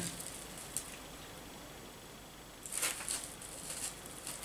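Quiet room tone, then near the end a few short rustling rubs as hands move along a long propeller-blade model.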